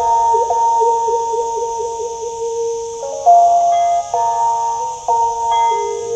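Instrumental Lanna music led by a phin pia, the northern Thai chest-resonated stick zither, in a slow melody of bell-like notes. A high note is held through the first half over a wavering lower line, then the notes change about once a second.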